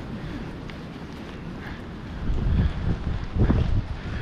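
Wind buffeting the microphone in low, rumbling gusts, stronger in the second half.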